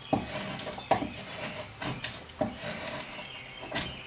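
A drawknife shaving wood from a Windsor chair seat in about five separate short strokes, each a brief scraping cut as the steel edge slices through the wood.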